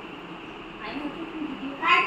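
A young child's short, high-pitched vocal cry near the end, rising in pitch, over faint steady background hiss.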